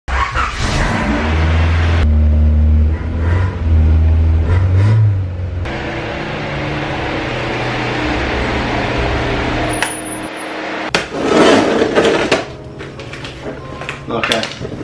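A 2007 BMW 335i's twin-turbo N54 straight-six engine and exhaust running in a few short edited clips: a strong low drone with a brief rise in revs, then a steadier run as the car moves. Near the end comes a loud short burst of noise.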